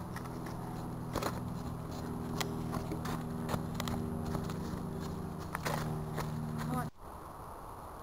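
Footsteps of people running on a dirt woodland trail, heard as scattered irregular crunches. Under them runs a steady low hum of several held tones that shifts pitch near six seconds in and cuts off suddenly near seven seconds.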